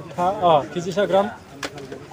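A man's voice calling out a fish's weight in kilograms, with a single sharp click a little after halfway.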